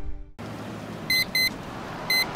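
A music jingle stops abruptly at the start, then an alarm clock beeps: one quick high double beep about a second in.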